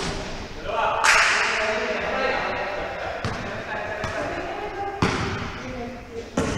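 Pickup basketball game on a hardwood gym court: players' voices calling out and sharp thuds of the ball and feet on the court, echoing in the large hall. A loud noisy burst comes about a second in, with single thuds near the middle and near the end.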